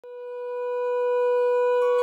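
One long, steady, horn-like note swelling in over the first second and then held. Other musical tones join just before the end.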